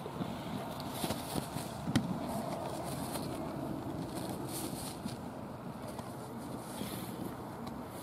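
Steady outdoor background noise, with wind buffeting the microphone and a sharp knock about two seconds in.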